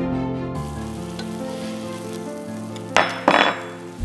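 Food frying in a pan, a steady sizzle under fading background music, with two loud bursts of sizzling about three seconds in.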